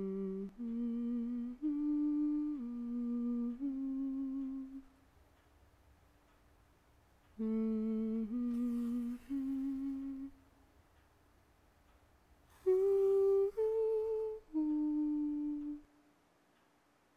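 A woman humming a slow, wordless melody in three short phrases of held notes, with pauses between them.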